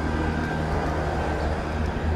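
Steady low rumble of city street traffic, with a faint steady hum over it.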